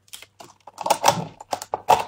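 Plastic packaging handled close to the microphone: a clear plastic dessert tub and its wrapper giving a run of irregular clicks and crackles.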